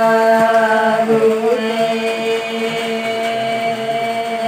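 Women singing a traditional wedding song, sung as the groom is dressed for the wedding and calling on the ancestors, in a chant-like melody of long, steadily held notes.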